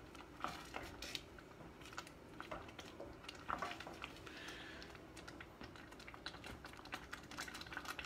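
Wooden spoon stirring thick tomato sauce and orzo in a stainless saucepan, scraping and tapping against the pan bottom where the orzo is sticking, with the sauce simmering. The sound is faint: a run of small, irregular clicks and soft scrapes.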